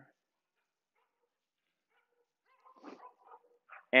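Mostly near silence, then about three seconds in a few faint, brief dog sounds lasting under a second.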